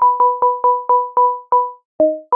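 Reason Thor synth patch of two sine-wave oscillators tuned an octave apart, one note repeated about four times a second, each plain and short with a click at its start and a brief ring-out. The balance between the lower and the higher oscillator is being adjusted, to make the high note the focus. The notes stop about three-quarters of the way through, the last one ringing out.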